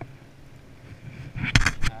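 A quick cluster of about three loud knocks and rustles close to the microphone near the end, over a low steady wash of wind and water.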